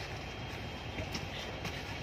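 Steady low rumble inside a coach bus, with a few faint knocks about a second in as cardboard cases of instant noodles are pushed into the overhead luggage rack.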